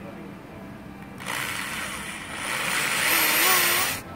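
Electric drill boring a pilot hole for a bolt into a boat's gunnel. The drill starts about a second in and runs with a wavering motor whine that grows louder toward the end, then cuts off.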